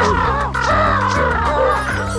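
Cartoon pigeons laughing together, several high, wobbling voices overlapping, over background music with a stepping bass line.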